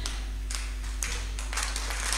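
Low steady electrical hum from the church sound system during a gap in speech, with a few faint taps about half a second and a second in.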